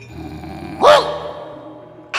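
A single short, loud vocal cry about a second in, rising then falling in pitch: a shouted exclamation voiced for a shadow-puppet character.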